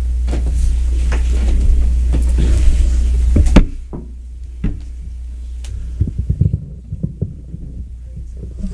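A loud low hum through the church's sound system cuts off suddenly with a thump about three and a half seconds in, followed by a few soft knocks.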